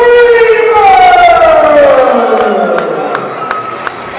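A ring announcer's long drawn-out call over the arena PA, its pitch sliding steadily down over about three seconds as it fades. A string of short sharp clicks comes in the last second and a half.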